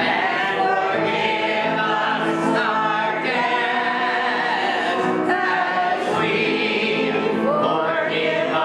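A church congregation singing together, with voices holding long notes and moving between them.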